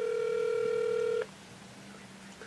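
Ringback tone of an outgoing mobile phone call: one steady beep lasting about a second and a half, which stops a little over a second in, as the call rings on the other end.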